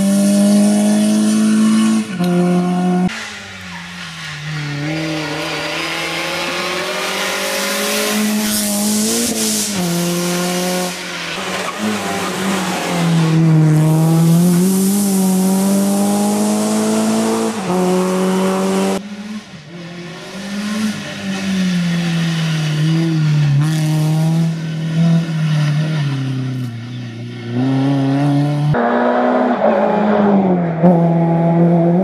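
Renault Clio rally car's engine driven hard on a tarmac stage, its pitch rising and falling again and again through gear changes and corners. The sound changes abruptly several times as one shot of the car gives way to another.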